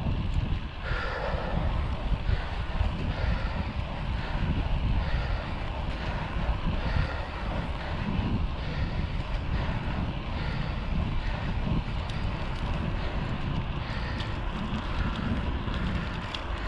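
Steady wind buffeting the camera microphone on a moving road bike, a continuous low rumble with road and tyre noise underneath.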